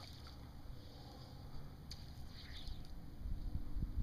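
Faint splashing of a hooked fish thrashing at the water's surface, over a low steady rumble that grows louder near the end.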